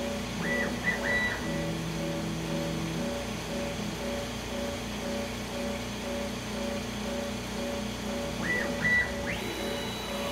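Axis drive motors of a TechCNC AP4060 CNC router whining through short probing moves as its touch probe automatically seeks a workpiece edge. Each move's pitch rises, holds and falls: twice about half a second to a second in, and again near the end, climbing higher. A lower steady tone runs between about 1.5 and 3 seconds, over a steady hum with a regular pulsing tone.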